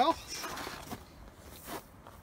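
A man says "well" at the start, then faint rustling and handling noise with wind on the microphone.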